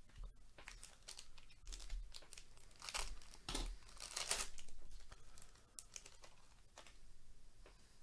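A Panini Prizm baseball hobby pack's wrapper being torn open and crinkled by hand, in a run of crackling bursts that are loudest about three to five seconds in, with a few lighter clicks around them.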